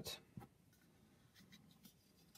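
Near silence with faint scraping and rustling of hands handling a metal star cutter over a clay slab, and a small click about half a second in.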